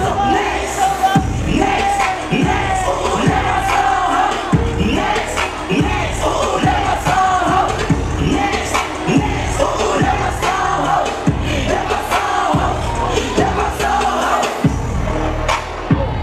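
Hip hop track played loud through a live PA with a heavy, regular bass beat, and a crowd shouting and cheering over it.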